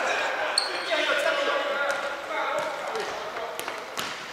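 A futsal ball being kicked and bouncing on a wooden sports-hall floor, several sharp thuds, with players calling out, all echoing in the large hall.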